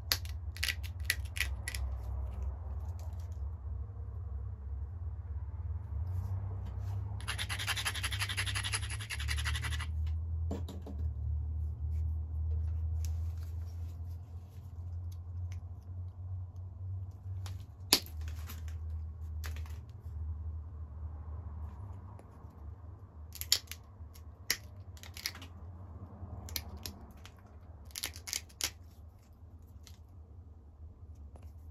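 Pressure flaking a flint biface with an antler tine: sharp clicks as flakes snap off the edge, a few in the first two seconds, a loud one around the middle and a cluster near the end. About seven seconds in comes some three seconds of rapid scraping against the stone's edge. A steady low hum runs underneath.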